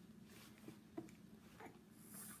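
Near silence: room tone with a faint steady hum and a soft click about a second in.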